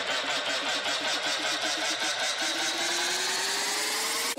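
Electronic build-up in a DJ mix: a fast, even buzzing pulse, joined about halfway through by a tone that climbs slowly in pitch, with an engine-like character.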